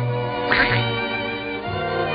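Orchestral cartoon score playing, with a short squawk from a cartoon duck voice about half a second in.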